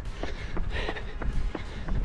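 Running footsteps of Reebok Floatride Energy 4 shoes on tarmac at tempo pace: quiet, soft footfalls about three a second over a steady low rumble.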